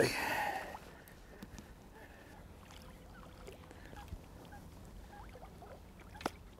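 Faint lapping and splashing water with scattered small ticks as a hooked carp is played up to the surface close to the bank on rod and reel.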